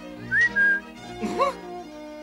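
A short whistle, rising and then held briefly, over background music, followed about a second and a half in by a brief chuckle.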